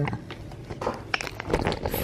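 A few light clicks and knocks of handling, with a dull thump about one and a half seconds in.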